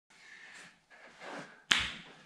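Faint rustling movement, then a single sharp hand clap near the end that rings out briefly.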